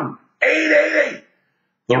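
A man clearing his throat once, a gravelly sound lasting about a second.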